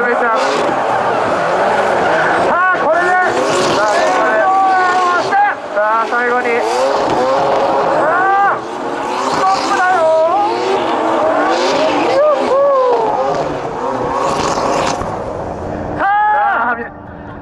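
Mazda RX-7 and Toyota GR86 drift cars sliding in tandem: engines revving up and down over and over as the throttle is worked, over a steady hiss and squeal of spinning tyres. There are two short dips in loudness, about five and a half and eight and a half seconds in.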